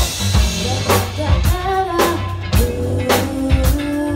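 Live band playing a funk song: drum kit keeping a beat of about two hits a second over bass and electric and acoustic guitars, with held pitched notes from the guitars or voice in the second half.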